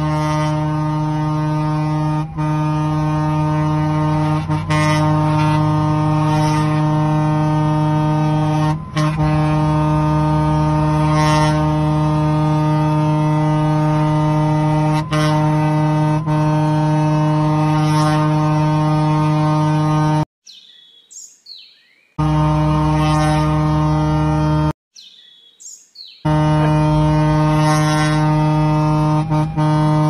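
Fire engine's air horn held in one long, loud, steady blast, cut off twice for a second or two about two-thirds of the way through, sounded to get stalled motorway traffic to move aside and open an emergency corridor.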